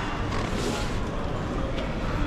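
Fabric rustling as a jacket is pulled off, with a brief burst of rustle about half a second in, over steady background noise with faint distant voices.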